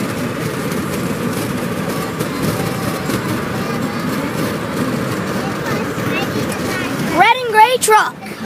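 Steady road and engine noise inside a moving car's cabin. Near the end a loud, brief vocal cry with a wavering pitch cuts in.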